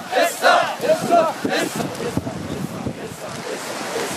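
A group of men shouting the rhythmic call "essa" in unison, about five shouts in quick succession that stop about halfway through. After that come wind on the microphone and surf.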